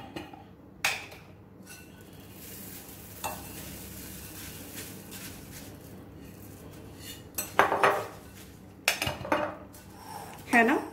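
Puffed rice poured from a glass jar into a glass bowl, a soft steady rustling hiss lasting several seconds. It is followed by a spoon clinking and scraping against the glass bowl in two short bursts as the mix is stirred.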